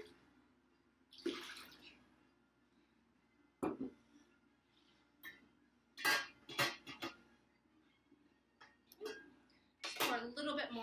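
A short splash of liquid into a glass jar about a second in, then a dull knock as the full glass gallon jar is set on the counter, followed by several clinks and clatters of a stainless steel pot lid being handled.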